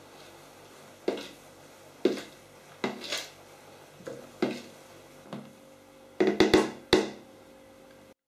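Metal spoon folding a spinach-and-yolk mixture into whipped egg whites in a plastic mixer bowl, knocking against the bowl's side roughly once a second, with a quick run of several knocks near the end.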